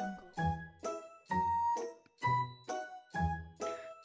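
Background music: a simple children's tune of separate chime-like notes, two or three a second, with short gaps between them.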